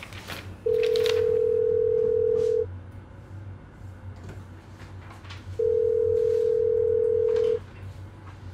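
Phone ringback tone heard in the earpiece: two long steady beeps of one pitch, each about two seconds, about three seconds apart. The called phone is ringing and the call has not been answered.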